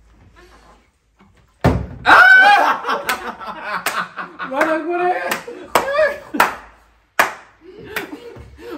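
A plastic bottle part-filled with drink thumps down on a table about one and a half seconds in, landing upright after a flip. Loud excited shouting and laughter follow at once, with a few sharp claps or slaps.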